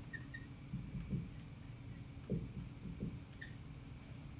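Faint short squeaks of a dry-erase marker writing on a whiteboard, with a few soft low sounds in between.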